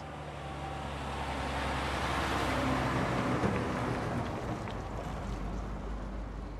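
Traffic noise: a vehicle passing swells to a peak about three seconds in and then fades, over a low steady hum.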